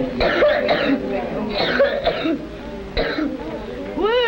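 A boy coughing and clearing his throat in three rough bursts, mixed with his voice.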